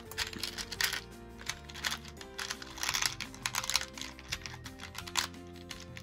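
Small plastic beads clicking and rattling in bursts as a hand rummages through a clear plastic compartment box, over steady background music.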